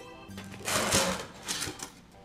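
An insulated foam-lined shipping box being opened: a loud rasping scrape about half a second to a second in, then a shorter one, over background music.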